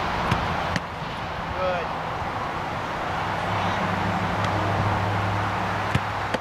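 A soccer ball struck hard with a sharp thud just before the end, over a steady outdoor background. A low steady hum, like a passing engine, sets in about halfway through.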